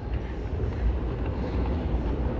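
Steady low rumble and hiss from riding an airport moving walkway, the travelator's running noise mixed with the hall's background noise.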